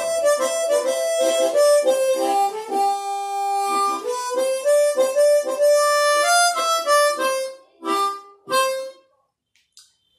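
Three-octave chromatic harmonica playing a melody with rhythmic tongue slaps (vamping), most notes chopped short, with one longer held note partway through. The playing stops about a second before the end.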